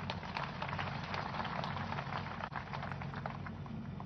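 A crowd clapping: a steady, dense patter of many hands over a low hum from the sound system.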